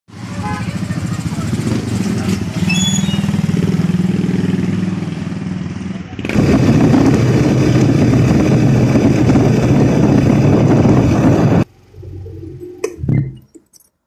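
Motorcycle engine running with rough wind and road noise. The sound jumps louder about six seconds in and cuts off suddenly near twelve seconds, followed by a few knocks.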